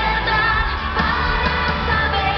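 Live pop song played loud over an arena sound system, a steady bass line under a sung melody.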